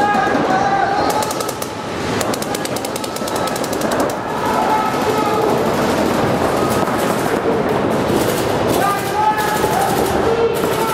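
Paintball markers firing rapid strings of shots, several guns overlapping in a fast crackle of pops.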